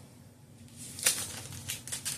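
Hands flipping through plastic CD cases in a rack: a few sharp clacks and light rustling, starting about a second in, the loudest clack first.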